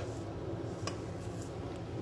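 Faint scraping of a hand scraper around a stainless steel stand-mixer bowl of wet donut dough, with a light click about a second in.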